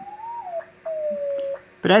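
Morse (CW) tone of a one-transistor crystal-controlled transmitter heard on a receiver: two held key-downs whose pitch will not stay put, the first rising then dropping and the second sliding steadily lower. This chirp and frequency shift is a sign that not all is well, which the builder puts down to some heating effect, possibly inside the crystals.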